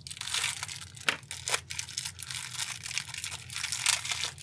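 Thin clear plastic bag crinkling and tearing as it is cut open with a hobby knife and pulled apart by hand, a run of sharp crackles with a couple of louder snaps about a second and a half in.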